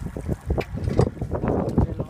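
Wind buffeting the microphone out on open water: an irregular, rough low rumble with uneven gusts and knocks.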